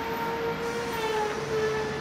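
A steady, unchanging tone with a fainter higher overtone, held throughout over low background noise.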